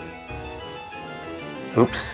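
Background music, a repeating melody of short plucked keyboard-like notes. A man says "oops" near the end.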